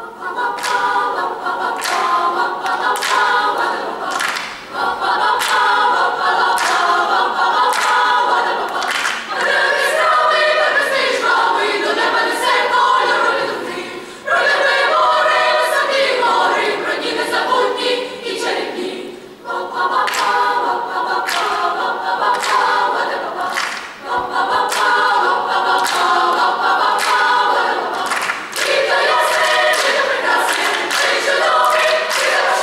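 Girls' choir singing a song in several parts, in long phrases with brief pauses between them.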